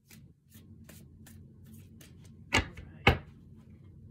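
A deck of tarot cards being shuffled by hand, with light clicks of cards slipping a few times a second. Two loud, sharp knocks come about half a second apart a little past the middle.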